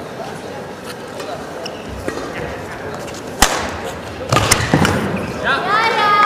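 Indoor sports hall background noise with murmuring voices, broken by one sharp knock about three and a half seconds in and a short rustling burst after it; a voice starts speaking near the end.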